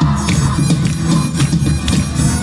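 Live band playing an instrumental passage: drums struck in a steady beat over a low, busy bass part.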